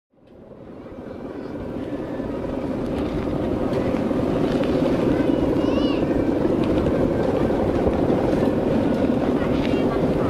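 Steady buzzing drone of a large Balinese kite's bow hummer in strong wind, with wind rumbling on the microphone, fading in over the first few seconds.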